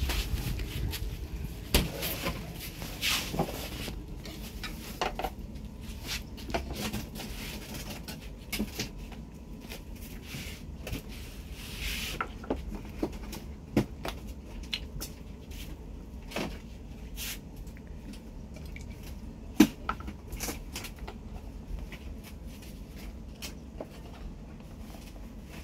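Irregular knocks and light clatter of cartons and kitchen items being picked up, handled and set down on a wooden counter, with one sharper knock late on.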